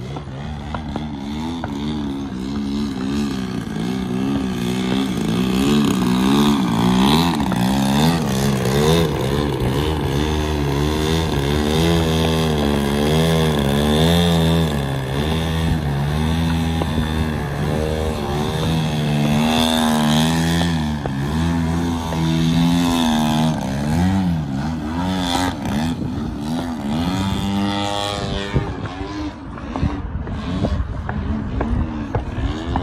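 Piston engine and propeller of a large RC aerobatic airplane running throughout, its pitch swinging up and down again and again as the throttle is worked through 3D manoeuvres, including a nose-up hover.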